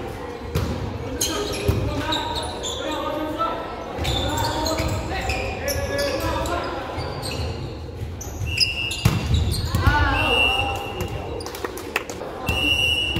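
Volleyball rally in a gymnasium: the ball smacked by hands and forearms several times, players shouting and calling, a loud shout near the end, all echoing in the large hall. A few brief high squeals sound in the second half.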